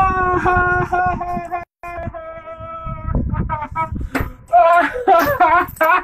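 A man's voice holding a long, drawn-out high note, broken by a brief dropout about a second and a half in, then loud excited shouting.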